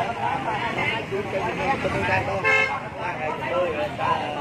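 A vehicle horn gives one short honk of about half a second, a little past the middle, over a crowd of people talking in the street.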